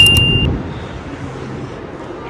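A subscribe-button animation sound effect: quick mouse clicks and a short, bright high ding right at the start. It then gives way to a steady low outdoor rumble from the city below.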